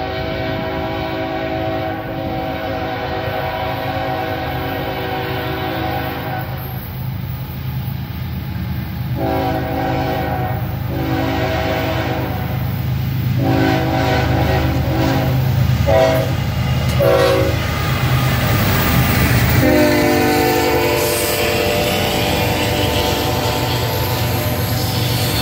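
Norfolk Southern diesel locomotives approaching with an intermodal train, the lead unit's multi-chime air horn sounding a long blast and then a series of long and short blasts, over a diesel rumble that grows louder as the train nears. Near the end the horn holds one last long blast as the locomotives pass, and the container cars start rolling by.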